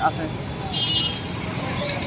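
Roadside traffic noise, a steady rumble, with a brief high beep a little under a second in.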